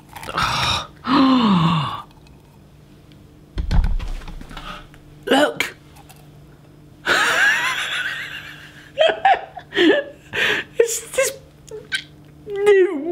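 A man's excited, wordless exclamations and gasps, including a long cry that falls in pitch about a second in, with a low thump just before four seconds.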